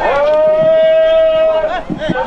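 A man's voice holding one long, steady high shouted note for about a second and a half, sliding up into it and dropping off at the end: the announcer's drawn-out call between prize announcements.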